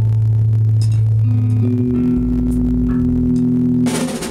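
Sustained low notes from an amplified instrument: one long held note gives way to a higher held note about halfway through. A few faint taps sound over them.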